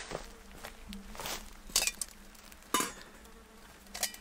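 Footsteps crunching a few times on dry leaf and bark litter, over the faint steady buzz of a fly.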